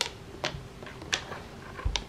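Sharp clicks from a plastic toothbrush zip-tied to a toy stick, handled among cats: four short clicks, unevenly spaced.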